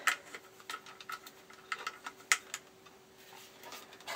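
Scattered light plastic clicks and taps, irregularly spaced, from a SwapTop motor unit's screw-on fuse cap being tightened and the orange plastic housing being handled.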